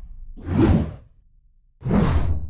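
Two short whoosh sound effects from an animated title sequence, the first about half a second in and the second near the end.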